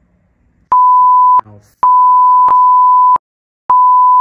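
Censor bleep: a steady high-pitched beep tone dubbed over swearing, sounding three times. The first is short, the second is longer at about a second and a half, and the third starts near the end. A muttered "hell" is heard in the gap between the first two.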